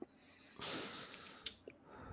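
Quiet pause with a faint breathy exhale, like a short sniff or laugh breath into a microphone, lasting under a second, then a single short click about one and a half seconds in.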